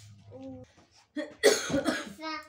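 A young child coughing: a short cough, then a harder, louder one about a second and a half in.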